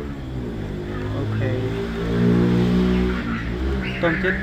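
A motor vehicle engine running steadily. It grows louder to a peak a little past halfway, then eases off slightly.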